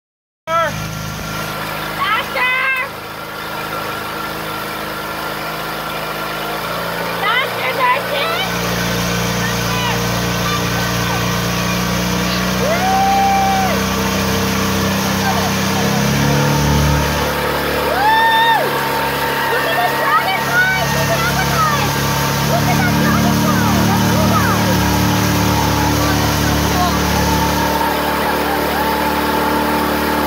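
Motorboat engine running steadily while towing, its pitch stepping up or down a few times, over the rush of water churning in the wake. Short calls and whoops from people's voices come through now and then.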